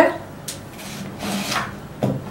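Kitchen knife slicing a peeled onion on a wooden cutting board: a sharp tap of the blade on the board about half a second in, then a short rasp as the blade cuts through, about a second and a half in.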